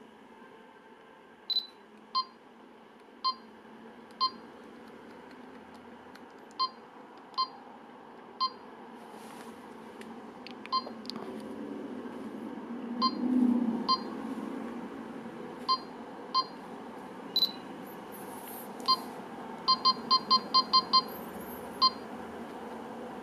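Canon EOS M6 mirrorless camera's electronic beeps as its buttons and dials are worked: short identical beeps about once a second, then a quick run of seven near the end. Faint control clicks and a brief handling rumble about halfway through.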